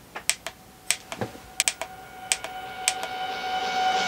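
A run of about nine sharp, irregular clicks. From about half a second in, a sustained musical tone swells steadily louder under them.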